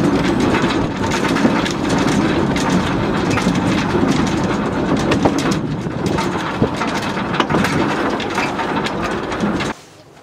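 A small rail car riding down a steep mountain track: steady running noise of wheels and drive, with scattered clicks and clacks from the rails. It cuts off suddenly near the end.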